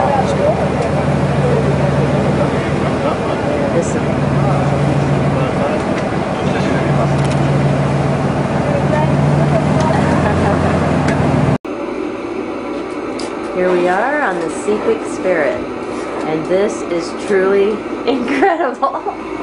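A motorboat engine running steadily, with a low hum under water and wind noise. About two-thirds of the way in it ends abruptly and indistinct voices take over.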